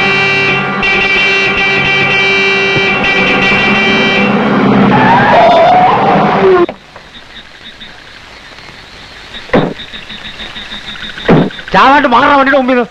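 Dramatic film background score of loud sustained chords, with sliding notes just before it cuts off abruptly about two-thirds of the way in. What follows is a quiet hiss with a faint, regular high pulsing, broken by two short sharp hits near the end.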